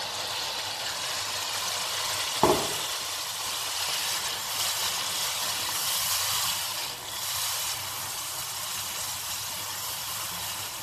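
Baby octopus and cuttlefish sizzling steadily in hot oil in a pot as tomato passata is poured in and stirred with a wooden spoon. There is a single knock about two and a half seconds in.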